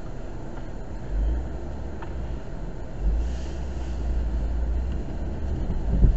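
Car driving along a road, heard from inside the cabin: a steady engine and tyre rumble. A deeper low rumble swells about a second in and again from about three to five seconds.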